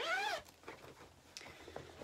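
A cat's short meow, rising then falling in pitch, right at the start; after it only faint rustling as the fabric project bag is handled.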